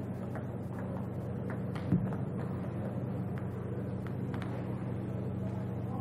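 Table tennis rally: faint, irregular clicks of the ball off the paddles and table, with a sharper knock about two seconds in, over a steady low hum.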